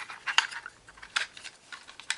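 A few light, sharp clicks and knocks of an IP security camera and its mounting bracket being handled.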